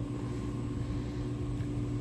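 Coffee vending machine running while it makes an espresso, a steady mechanical hum with a constant low drone.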